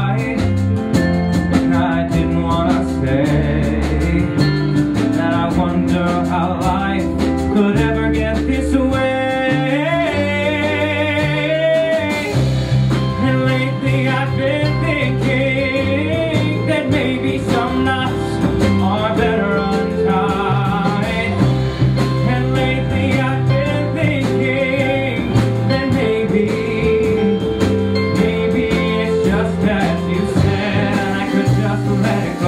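Live band music from a grand piano, electric guitar, bass and drums, with a wavering, vibrato-rich melodic line through the middle.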